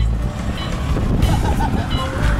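Open-windowed tour bus driving along a road: a steady rumble of engine and road noise, with wind rushing past the microphone held outside the window.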